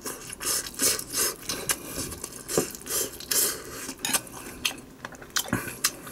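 Metal spoon scraping and stirring through fried rice in a glass bowl: a string of irregular scrapes with light clinks against the glass.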